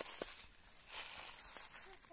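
Soft footsteps and rustling in dry leaf litter on a forest floor, with a faint murmur of a voice near the end.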